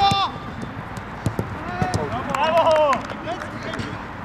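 Footballers' shouts and calls on a small-sided pitch, with sharp thuds of the ball being kicked and struck. A burst of shouting comes around the middle as a goal is scored.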